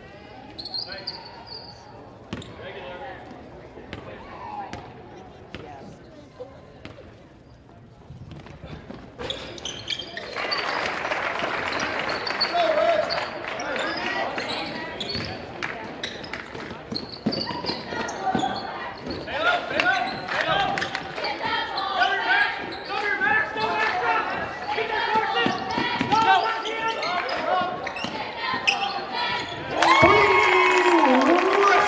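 Basketball bouncing on a hardwood gym floor around a free throw, then play going on with the knock of the ball and players' and spectators' voices growing louder from about ten seconds in.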